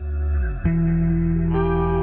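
Channel intro music of sustained, effected guitar chords with a deep low end. A new chord comes in about two-thirds of a second in, and higher notes join about halfway through.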